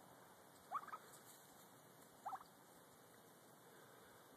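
Near silence with two faint, brief squeaky calls rising in pitch, about a second and a half apart.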